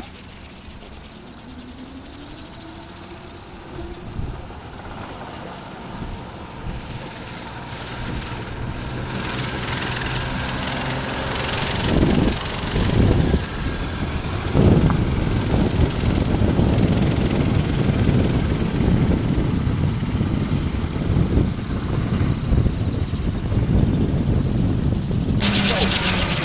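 The spinning rotor of a wind-powered car whirring as the car is pushed off and rolls on tarmac, mixed with gusty wind noise; a faint hum rises in pitch a few seconds in, and the sound builds over the first dozen seconds.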